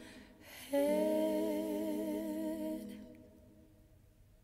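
Female voices humming a held chord in close harmony, with vibrato. The chord enters about a second in and fades out by about three seconds, as the earlier chord dies away.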